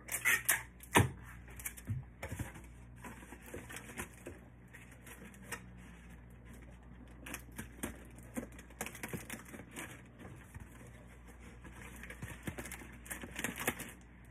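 A foil heart balloon and a ribbon bow being handled and pressed into a gift box: irregular crinkling, rustling and light clicks, with a few sharper knocks in the first second or so.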